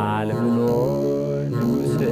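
A man singing a slow, chant-like Ethiopian hymn in long, gliding held notes, accompanying himself on the begena, the large Ethiopian lyre, whose plucked low strings sound under the voice.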